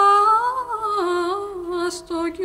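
Female voice singing a slow lullaby melody in a soft, humming-like tone: a held note swells up in pitch, then steps down through several sustained notes.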